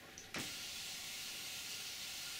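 Hand pressure sprayer spraying water onto freshly sown seed substrate, a steady hiss that starts suddenly about a third of a second in.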